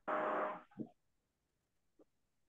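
A short burst of rushing noise on the video-call audio that stops about two-thirds of a second in, followed by a brief low sound and then near silence.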